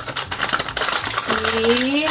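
Foil blind bag crinkling and tearing as it is opened, with small clicks of the hard plastic capsule inside being pulled out. A brief sharp crackle comes about a second in. In the last half second a voice starts a drawn-out, rising vowel.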